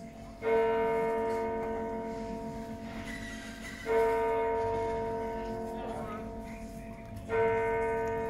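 Large church tower bell of the Nieuwe Kerk tolling, struck three times about three and a half seconds apart. Each stroke rings out and fades slowly until the next.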